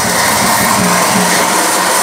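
Loud, steady rushing noise with no beat in it, during a break in a live raw hardstyle DJ set.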